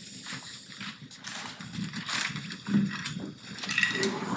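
Classroom bustle: irregular rustling and shuffling with a faint low murmur from the room.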